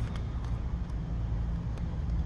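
Steady low outdoor rumble of background noise, with a couple of faint clicks as the pages of a small prayer book are turned.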